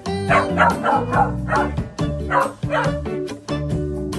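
Welsh corgi whining and yipping in a quick string of short, high cries over background music.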